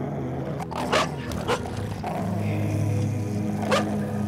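A pit bull-type dog barking aggressively in a few sharp barks, three in the first second and a half and another near the end, over background music.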